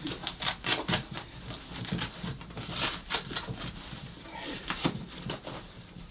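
A rice-filled sock being pushed down into a snowboard boot liner: irregular rustling and soft clicks of fabric and shifting rice grains.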